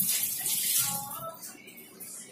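A water tap runs in a steady stream and stops about halfway through.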